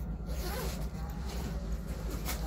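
A bag's zipper being pulled and the bag handled, over the steady low rumble of the moving train.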